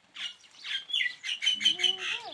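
Small birds chirping: a run of short, high, repeated chirps that quickens to about six or seven a second in the second half. A brief low call rises faintly under them near the end.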